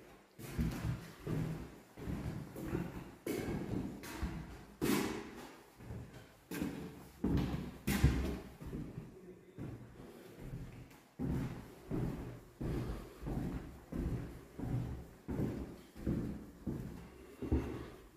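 Footsteps on bare wooden floorboards in an empty room: a steady walking pace of about two dull thuds a second, each with a short hollow echo.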